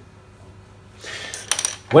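Brief handling noise, rustling with a few light clicks about one and a half seconds in.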